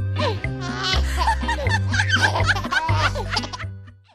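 Cartoon baby voices giggling and laughing over bouncy background music with a steady bass line; the sound fades out near the end.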